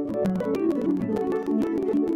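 Pedal harp being played: a quick flow of plucked notes, several ringing on together, mostly in the middle range.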